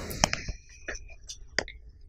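Faint rustling, a few soft clicks and brief breathy whisper-like sounds from a clip-on lapel microphone as its wearer moves.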